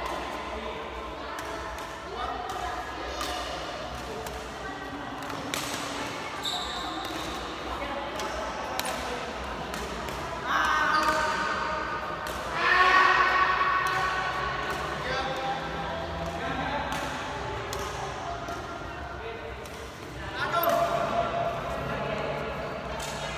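Badminton play in an echoing indoor hall: a series of sharp, irregular racket strikes on the shuttlecock, with people's voices calling out, loudest a little past the middle and near the end.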